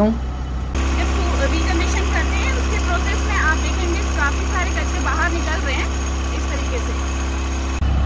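Tata Ace Gold BS6's 700cc two-cylinder diesel engine running steadily at a raised idle during a forced diesel particulate filter regeneration. The steady engine note sets in just under a second in and stops just before the end.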